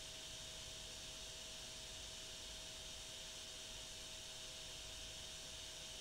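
Quiet, steady hiss of the recording's background noise with a faint, steady hum.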